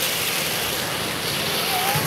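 Steady rushing and splashing of water from a garden fountain.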